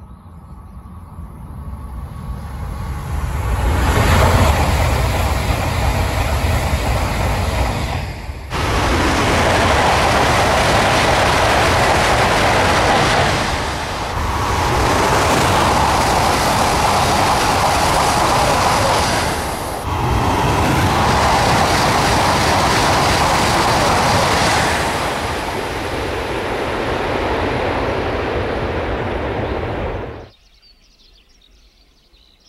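E956 ALFA-X test Shinkansen passing at high speed: a loud rushing noise of air and wheels that builds over the first few seconds as it approaches and then stays loud. It jumps abruptly twice where the footage is cut, and stops suddenly at the end.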